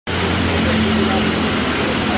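Loud, steady background noise that starts abruptly, with indistinct voices and a low hum mixed in.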